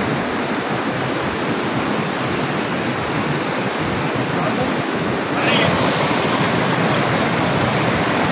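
Fast mountain river, the Kunhar, rushing over boulders: a steady, loud rush of whitewater.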